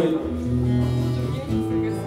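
Acoustic guitar played alone between sung lines of a song, sustained chords ringing with the bass note changing shortly after the start and again about one and a half seconds in.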